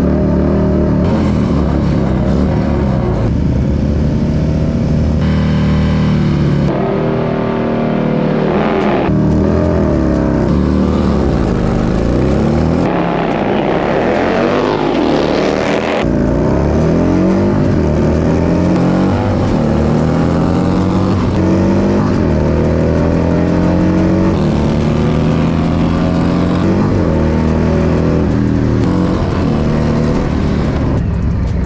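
Harley-Davidson Milwaukee-Eight V-twin engines revving hard, first through a burnout at the starting line and then at full throttle down a drag strip, the pitch climbing and dropping again and again across several edited clips. Around the middle the bikes pass at speed, with the pitch rising and then falling. Near the end an engine runs at lower, steadier revs.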